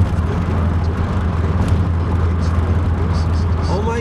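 Steady low drone of road and engine noise inside a Pontiac Fiero's cabin, cruising at highway speed.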